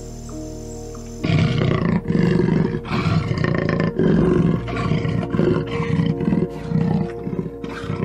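Leopard roaring, a run of loud repeated calls with short gaps, starting about a second in, over soft background music.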